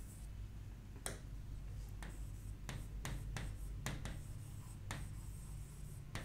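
Pen writing on a board: a string of short, irregular taps and strokes as letters are written.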